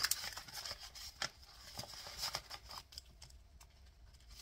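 Clear plastic binder pouch and laminated sheets rustling and crinkling as the sheets are slid into the pouch, with scattered light ticks; it quietens near the end.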